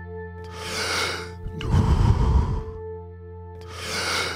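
Forceful deep breathing in a Wim Hof–style power-breathing round: full breaths in and out about every second and a half, over background music with steady held tones.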